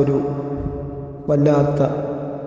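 A man's voice in a melodic chant, holding long notes at a level pitch. It drops away briefly around the middle and starts again a little past the halfway point.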